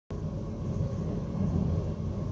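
Steady low rumble of a moving passenger train heard inside the carriage, with a faint steady high tone over it.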